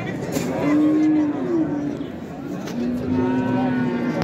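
Cattle mooing: two long calls, the first about half a second in, the second lower and held for about the last second and a half.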